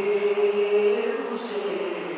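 A man chanting a majlis recitation into a microphone, holding one long drawn-out note that then bends in pitch, with a short hiss about halfway through.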